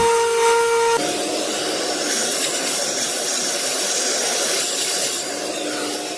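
Milling machine spindle whining steadily while a small end mill engraves an aluminium block, with a hiss of cutting over it; about a second in, the whine jumps to a different pitch.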